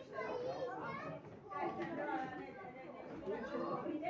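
Indistinct chatter of several voices talking over one another, no one clear speaker.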